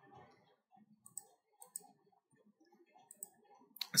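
A few faint, sharp computer-mouse clicks and scroll-wheel ticks: one about a second in, a pair a little later and another pair near the end.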